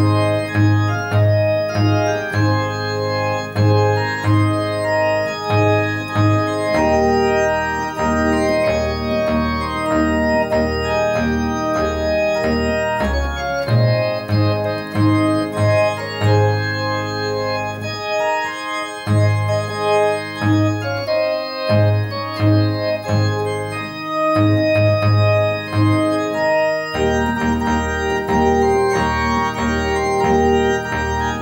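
Kawai DX900 electronic organ playing a hymn: sustained chords over a bass note that pulses about twice a second.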